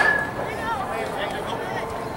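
Distant voices of players and spectators calling out across an indoor soccer field, with a sharp knock right at the start, the loudest moment.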